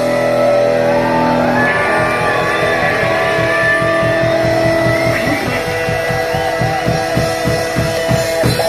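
Live rock band playing: electric guitar holding long sustained notes that waver in pitch, with a quick regular low pulse coming in about halfway.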